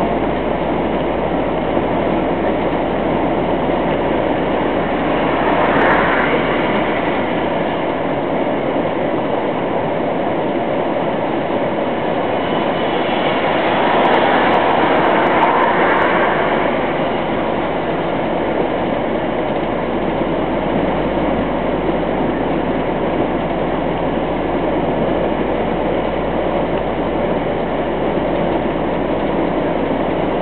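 Steady engine and road noise inside a truck's cab at motorway speed, swelling louder briefly twice.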